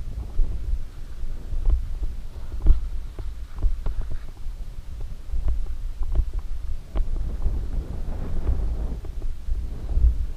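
Mountain bike descending a rocky dirt trail, heard muffled through a bike-mounted action camera: a constant low rumble of tyres and frame over the ground, broken by many sharp knocks and rattles as the bike hits rocks and bumps.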